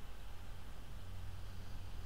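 Room tone of a small room: a steady low hum under a faint even hiss, with no speech.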